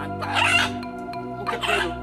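A chicken held by the legs squawks twice, about half a second and about a second and a half in, over steady background music.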